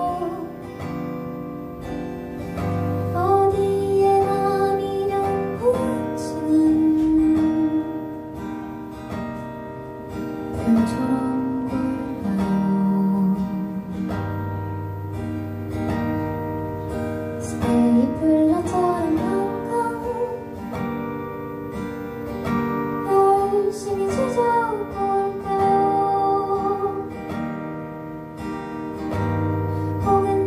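A woman singing a gentle song into a microphone while strumming and picking an acoustic guitar, live and unaccompanied by other instruments.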